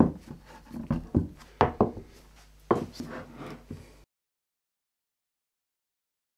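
A series of sharp knocks and taps from work on an MDF board on a wooden workbench, about seven in the first three seconds, the loudest right at the start. The sound cuts off to silence about four seconds in.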